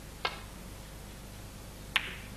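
Snooker cue tip striking the cue ball with a light click, then about a second and a half later a louder, sharper click as the cue ball hits the object ball up the table.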